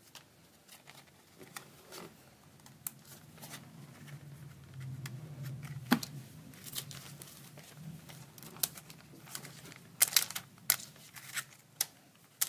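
A printed paper card handled by hand: rustling and crinkling paper with scattered sharp taps and clicks. The sharpest comes about six seconds in as the card is laid on the table, and several more follow in quick succession near the end.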